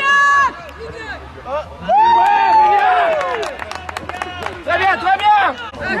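Players shouting to each other during an ultimate frisbee point: a short call at the start, one long drawn-out shout about two seconds in that falls in pitch, and a few quick shouts near the end.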